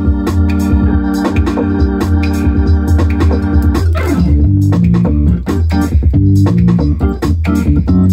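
1960s Hammond organ holding a sustained chord for about four seconds, then dropping with a falling slide into short, rhythmic stabbed chords. A Roland TR-8S drum machine beat at 138 BPM plays underneath.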